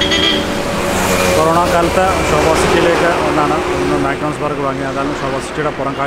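Road traffic passing, a steady motor drone under a haze of road noise, with people talking over it throughout.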